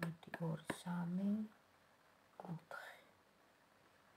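A woman speaking softly in Georgian. Her phrase trails off about a second and a half in, and a short utterance follows near the three-second mark.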